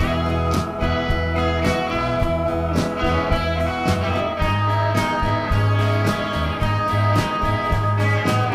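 Live rock band playing an instrumental passage: picked electric guitar over a steady bass line, with regular sharp strokes of the rhythm running through it.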